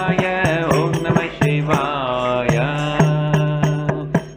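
A man singing a devotional chant in Carnatic style, his voice gliding around a steady low drone, with many short sharp clicks through the singing.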